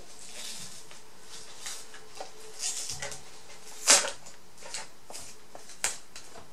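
White plastic packaging rustling and crinkling as it is unwrapped by hand, in short irregular bursts. The loudest crackle comes about four seconds in, and a sharp click follows near the end.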